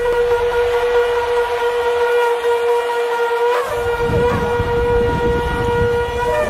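One long, steady horn note held without a break, over low crowd noise, with a few brief shouts about three and a half seconds in.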